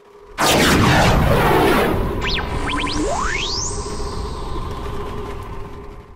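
Cinematic logo sting: a sudden deep boom about half a second in with falling whooshes, then a few quick rising electronic zips and one long rising glide over a held synth drone that slowly fades.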